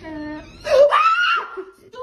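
A woman's high-pitched startled shriek, rising in pitch and lasting under a second, the loudest sound about half a second in, followed by laughter.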